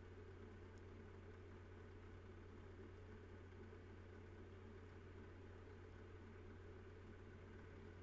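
Near silence: steady room tone with a faint low hum.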